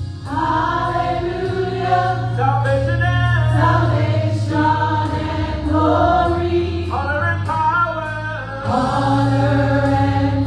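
Gospel vocal group singing together in harmony into microphones, amplified through a PA, over held low bass notes that change a few times.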